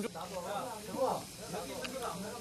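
Voices talking over a steady hiss of meat sizzling on a barbecue grill.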